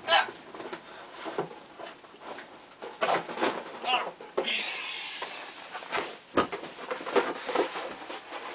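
Off-camera handling and rummaging noises in a small room: scattered knocks and clicks, with a stretch of rustling about four and a half seconds in.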